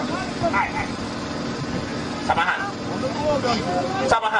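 Several people talking and calling out near a stage microphone, over a steady low drone.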